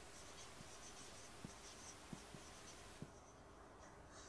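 Faint marker pen scratching and squeaking across a whiteboard as words are written. It stops about three seconds in, with a few small ticks along the way.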